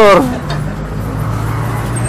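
A motor vehicle's engine running close by: a steady low hum that strengthens about a second in, as a man's voice trails off at the start.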